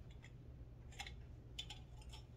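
Near silence broken by a few faint soft clicks while someone drinks from an aluminium can.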